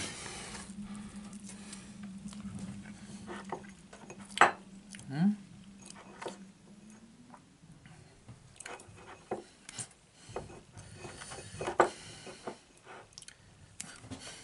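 A metal spoon handling a cake on its plate: scattered light clicks and taps, with the sharpest about four seconds in and again near twelve seconds. A low steady hum runs under the first half and stops about halfway.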